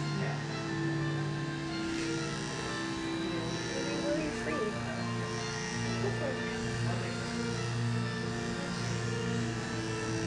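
Background music with long held notes, with a voice heard over it at times.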